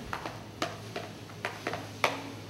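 White plastic food chopper knocked and tapped against a foil baking pan as diced onions are shaken out of it: a run of irregular sharp taps and clicks, about seven in two seconds.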